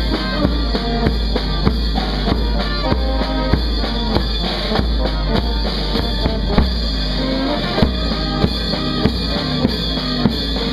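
Procession brass band playing a march on the move, with tuba and trumpet notes over a steady drum beat, a little under two beats a second.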